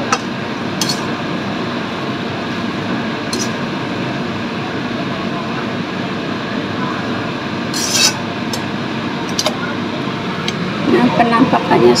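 Noodles stir-frying in a wok over a gas flame: a steady frying noise, with a perforated ladle clinking and scraping against the pan a few times as the noodles are tossed.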